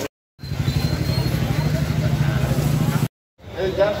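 A motor vehicle engine running steadily with a fast pulsing beat for about three seconds, starting and stopping abruptly.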